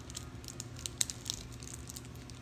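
Small plastic jewelry packaging crinkling, with scattered sharp little clicks as rings are handled, over a faint steady hum.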